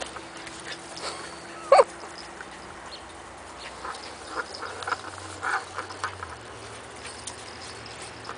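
Two miniature dachshund puppies play-fighting. One sharp yelp comes about two seconds in, then a flurry of short yips in the middle.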